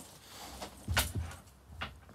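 A dull thump about a second in and a fainter click near the end: handling noise as the glass is moved close to the camera.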